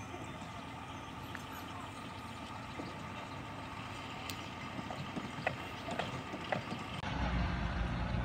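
Steady outdoor background noise with a few light knocks in the latter half, then an abrupt change to a louder low rumble near the end.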